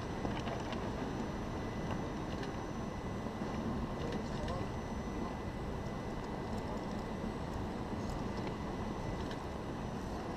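Steady rumbling wind noise on the microphone, with faint voices in the background.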